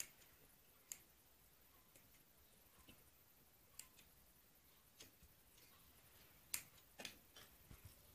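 Near silence broken by a handful of faint, short clicks spaced about a second apart: tailor's scissors snipping excess cloth off a garment's side seam and being handled.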